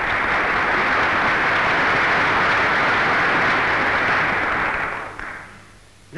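Audience applauding steadily, dying away about five seconds in.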